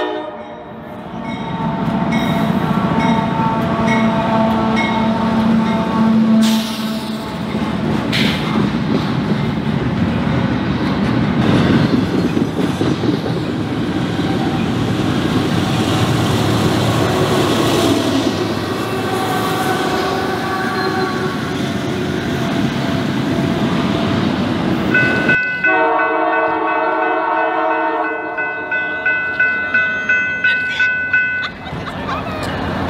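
A train passing close by at a grade crossing: a horn blast ends at the start, then the locomotive and the rumble and clatter of the cars go by for about 25 seconds. About 25 seconds in the sound changes abruptly to a horn chord sounding steadily again.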